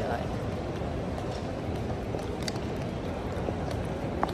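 Steady background noise of a busy train-station concourse: a constant hum of the big hall with faint distant voices and a few small clicks.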